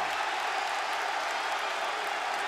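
Home crowd in a basketball arena cheering and applauding an offensive foul called against the visiting team, a steady, even wash of crowd noise.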